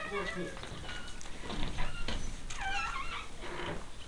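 A high, wavering animal call, loudest about two and a half seconds in, with a shorter one near the start, over faint voices.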